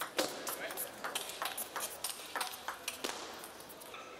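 Table tennis rally: the celluloid ball clicking sharply off the players' rubber-covered bats and the table in quick alternation, about three clicks a second.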